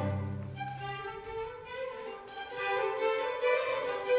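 String orchestra of violins, violas, cellos and double bass playing a classical piece. The low cello and bass notes stop about a second in, leaving the upper strings playing softly, and the sound grows louder again near the end.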